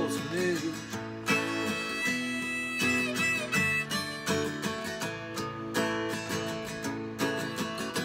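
Acoustic guitar strummed steadily while a harmonica in a neck rack plays held notes over it, an instrumental break with no singing.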